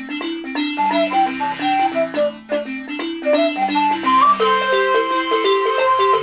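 Balafon, a wooden xylophone with gourd resonators, played in a quick run of struck notes, joined by a wooden flute that holds one long high note from about four seconds in.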